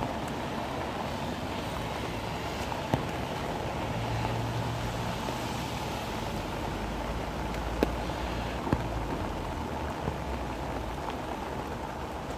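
Steady heavy rain falling, with a few sharp taps scattered through it.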